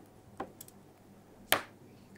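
Keys pressed on a laptop keyboard: a few sharp clicks, a faint one about half a second in and a louder one about a second and a half in.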